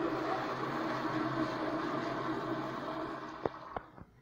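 American Standard commercial toilet flushing: a steady rush of water swirling and draining down the bowl, easing off after about three seconds. It ends with a few sharp clicks.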